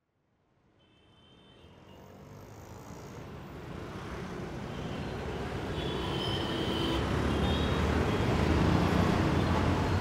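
Busy city street traffic, a steady mix of engine and road noise from motorbikes and auto-rickshaws. It fades in from silence about two seconds in and grows steadily louder.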